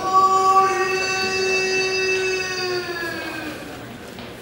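A man's drawn-out chanted call in the sumo ring: one long sung note held for about three and a half seconds, sinking slightly in pitch as it fades.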